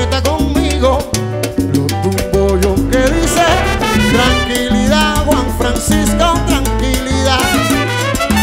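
Cuban dance orchestra playing a guaracha: a trumpet and saxophone section plays riffs over bass, piano and Cuban percussion.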